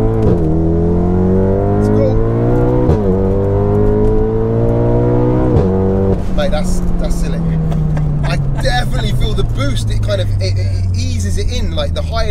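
Big-turbo 2.0-litre four-cylinder VW Golf R engine heard from inside the cabin, accelerating hard with the revs climbing and dropping at three quick DSG upshifts: just after the start, about three seconds in and just under six seconds in. The engine note then falls away steadily as the throttle is lifted.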